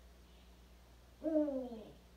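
A Eurasian eagle owl gives one drawn-out call about a second in, falling slightly in pitch: a captive female begging for food.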